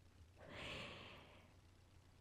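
A woman's single soft breath, an airy rush lasting about a second, taken in a pause in her speech.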